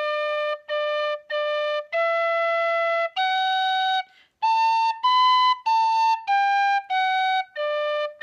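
Tin whistle in D playing a slow, note-by-note phrase of a Scottish reel, each note tongued separately. It opens with three short low Ds, then a longer E and F sharp, climbs to A and B, and steps back down A, G, F sharp to low D. This is a teaching demonstration of the phrase D D D E F A B A G F D.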